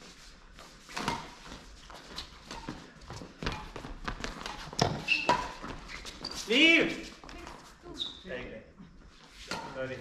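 Badminton rally: sharp racket strikes on a shuttlecock and players' footsteps on the court floor, echoing in a large hall. About two-thirds of the way through comes the loudest moment, a short shout from a player.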